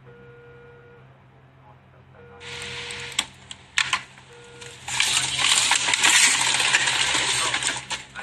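Frozen plastic breast-milk storage bags being handled in a freezer: rustling and clattering with sharp clicks and knocks, starting a little over two seconds in and loudest over the last three seconds.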